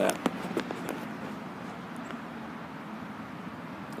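Steady, fairly quiet background noise with a few light clicks in the first second or so, from the camera being handled while it is brought to focus.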